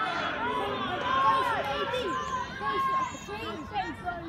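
Several voices at a football match shouting and calling over one another, with drawn-out calls that rise and fall in pitch.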